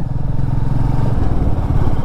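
Motorcycle engine running under way, with a steady rushing noise of wind and road. Its note shifts slightly just past halfway.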